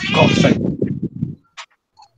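A man's voice: a drawn-out, wavering "oh", followed by quieter voice sounds that trail off after about a second and a half.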